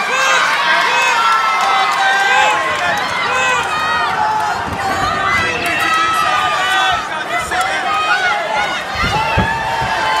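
Crowd of fight spectators shouting and yelling over one another. A few dull low thumps come through near the end.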